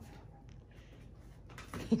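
Faint rustling and scraping of a cardboard shipping box as a Great Dane noses and tears at it, with a small click about half a second in.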